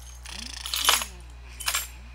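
Two short metallic clinks, the first and louder about a second in, a second softer one near the end, over a steady low hum.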